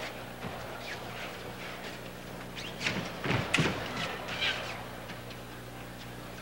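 Foil fencers' footwork on the piste: scattered scuffs and taps, with a brief cluster of sharp knocks about three seconds in, over a steady electrical hum.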